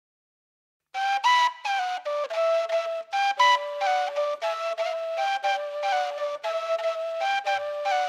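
A solo flute melody that starts about a second in after silence, moving in short held notes and steps.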